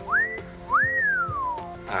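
A man's wolf whistle: a quick upward swoop, then a second swoop that rises and glides slowly down. It is whistled at a woman, which draws a rebuke.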